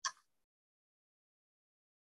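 Near silence on a video-call audio line, broken once right at the start by a single short sound lasting under half a second.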